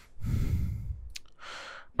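A man breathing close to the microphone: a long exhale like a sigh, a short click about a second in, then an intake of breath just before he speaks again.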